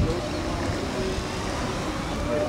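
Steady outdoor background noise with a low rumble.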